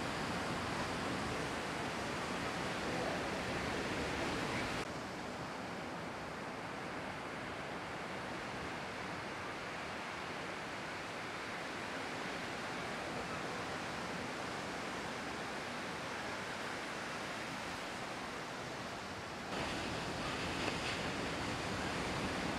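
Ocean surf: a steady wash of waves breaking. The sound steps down abruptly about five seconds in and back up near the end.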